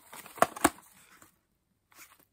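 A small cardboard gift box being handled and opened: two sharp clicks about half a second in, then faint rustling.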